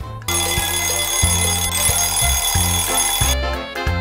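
Show jingle: music with a bass line under an alarm clock ringing. The ringing cuts off suddenly about three seconds in, followed by a quick run of clicks.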